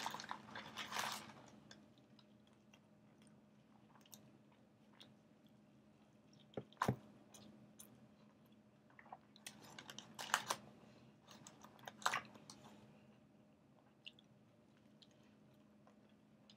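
A person biting into and chewing a large burrito, heard faintly in short scattered bursts with occasional crunches and clicks.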